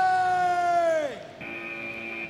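A drawn-out 'Athletes ready' call, its last vowel held and then dropping away about a second in. It is followed by a steady electronic start tone that marks the beginning of the chase.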